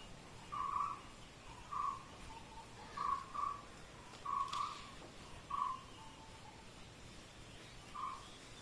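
A bird calling faintly: short calls of one steady pitch, repeated every second or so, some in quick pairs, with a quieter lower note between them.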